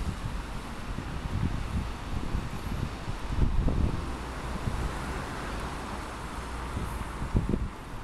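City street traffic from below: a steady wash of cars and a van driving past. Wind buffets the microphone in gusts, strongest about three and a half seconds in and again near the end.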